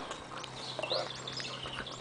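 Small songbirds chirping in the background in a quick run of short, high notes, over a faint steady low hum.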